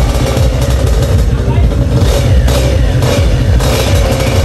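A drag-racing Vespa scooter's engine running, with a voice heard over it.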